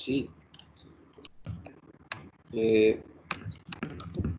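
Irregular light clicking at a computer, about a dozen scattered clicks. A man's voice makes a brief hesitant sound near the middle.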